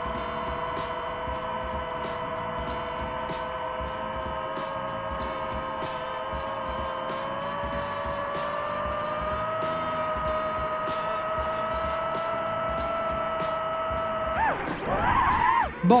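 Steady, multi-tone whine of a quadcopter's propellers and motors in flight, rising slightly in pitch about midway, with a light, regular background music beat.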